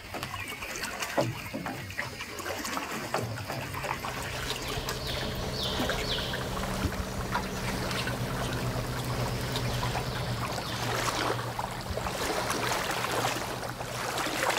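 Lagoon water lapping and trickling, with a steady low hum underneath and a few faint high chirps about five seconds in.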